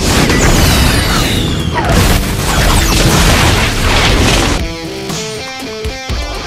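Missile-strike sound effects over music: a loud blast with a falling whistle, and a second blast about two seconds in. The effects die away after about four and a half seconds, leaving guitar music.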